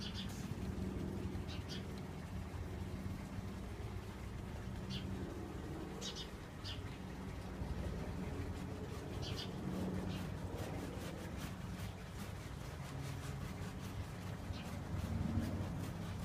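Stiff bristle brush dabbing and scrubbing oil paint onto a stretched canvas, soft scratchy strokes over a steady low hum, with a few short high chirps here and there.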